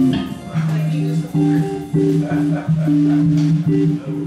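A small jazz band playing: sustained, repeated electric bass and guitar notes over light, regular cymbal taps.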